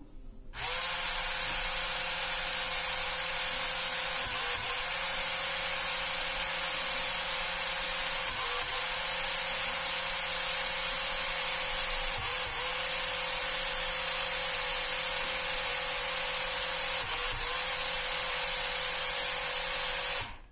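Small DC gear motors of a four-wheel mecanum-wheel robot car running with a steady motor hum. The hum falls off and picks up again briefly four times as the motors switch direction at each turn of the path.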